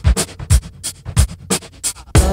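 Sparse percussion from the dance music: separate low drum strikes, about one every half second, with sharp high clicks between them.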